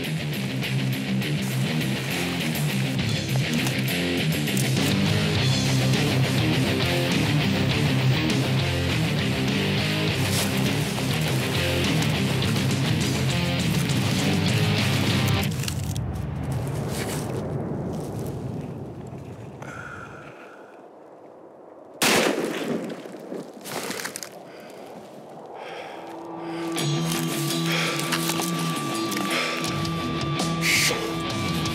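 Guitar background music that fades out about 16 seconds in; in the quiet that follows, a single rifle shot goes off about 22 seconds in, the loudest sound, with a short trailing echo. Music comes back near the end.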